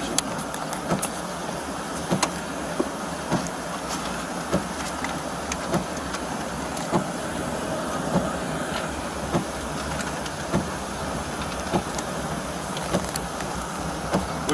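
A car idling with a steady low hum, overlaid by a sharp, regular tick a little under twice a second.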